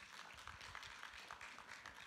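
Faint, scattered applause from a congregation: many quick, irregular claps.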